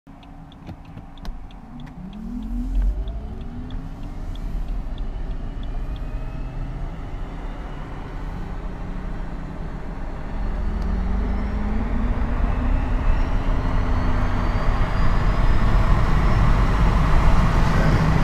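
Electric drive of a BMW 7 Series converted to run a Lexus GS450h hybrid transmission's motors on a 400-volt pack, accelerating hard: a motor whine rising in pitch over road and tyre noise that grows louder as speed builds, heard from inside the cabin.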